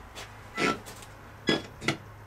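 Spirit box sweeping through radio stations: four short, choppy fragments of radio sound, some of them musical, over a low steady hum.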